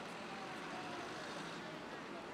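Steady outdoor background noise with faint, indistinct voices of people talking.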